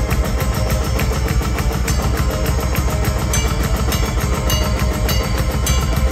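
Symphonic metal band playing live and loud: electric bass and band over a drum kit, with fast, evenly spaced bass-drum and cymbal strokes.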